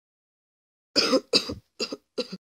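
A person coughing three times in quick succession, starting about a second in.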